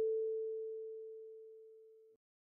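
A single kalimba note, the A4 tine, ringing on and fading steadily after being plucked a moment before.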